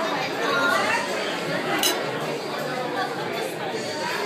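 Crowded restaurant dining room: many overlapping voices chattering at once, a steady hubbub. A single brief sharp clink cuts through a little under two seconds in.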